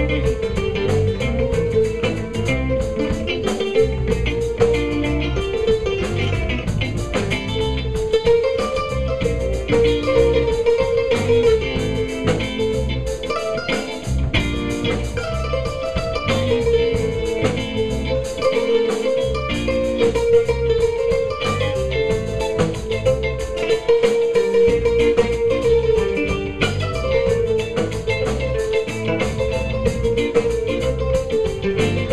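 Live West African band playing an instrumental passage: kora with electric guitar, electric bass and drum kit, at a steady groove.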